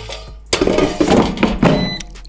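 Plastic basket drawer of a Rosenstein & Söhne air fryer being slid into its housing and clunking into place, with a sudden knock about half a second in and more knocks and rattling after it.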